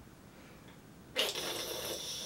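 A long breathy exhale, like a sigh of frustration, starting about a second in and lasting about a second and a half, from a person stumped by a guessing question.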